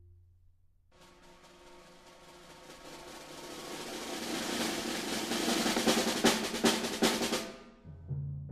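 Percussion quartet playing a long drum roll. It begins about a second in and swells steadily from soft to loud, with sharp accented strikes near the peak, then cuts off abruptly near the end.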